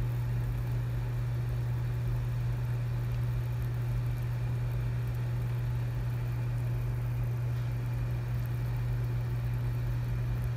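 Water boiling in a pan, with a steady low hum dominating throughout.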